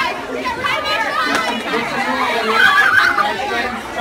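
Crowd chatter: many people talking at once in a packed room.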